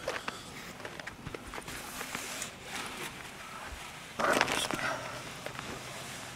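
Rustling of landing-net mesh and the fabric of a padded carp cradle as the net is drawn out from under a caught carp, with faint scattered clicks. About four seconds in comes a louder burst of rustle lasting about half a second.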